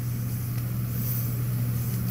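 A steady low hum with a faint background hiss, with no other distinct sound.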